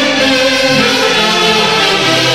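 An orquesta típica del centro playing a tunantada. A saxophone section carries a sustained melody in harmony, with violins and an Andean harp, loud and steady throughout.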